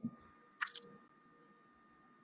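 Two short, sharp clicks within the first second, then faint room tone with a thin, steady high tone.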